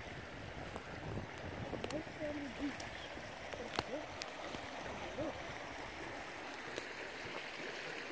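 A small woodland brook running, a steady soft rush of water, with a few faint clicks over it.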